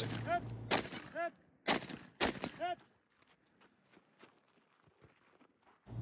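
Three single rifle shots from the WWSD2020 (KP-15) rifle, about a second and then half a second apart, with short pings between them. After about three seconds the sound cuts out to silence.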